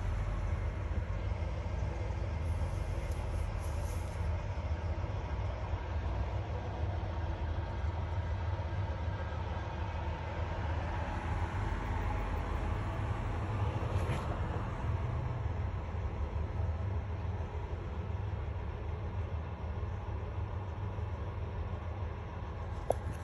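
A steady low rumble with a light hiss over it, unchanging throughout, with one faint tick about two-thirds of the way through.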